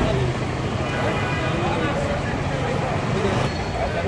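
Street traffic: a steady hum of car engines idling in a jam, with people talking in the background.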